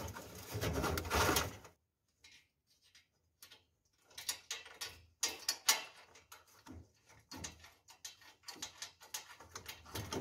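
Steel band of a roll-up shutter spring scraping and clicking against the metal spring pulley as its end is fed in by hand: a rustling scrape for the first second and a half, a short pause, then a string of light clicks and scrapes.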